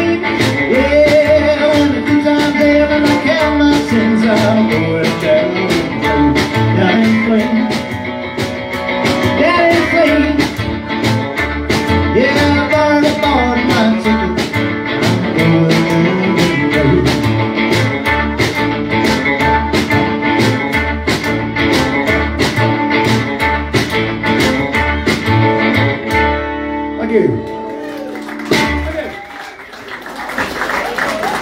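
Live rock and roll band of upright double bass, electric guitar and a small drum playing an instrumental section with a fast, steady beat. About four seconds from the end the song winds down to a last chord that fades out.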